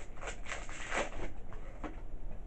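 Pokémon trading cards handled and moved about in the hands, a few soft rustles, the clearest about a second in.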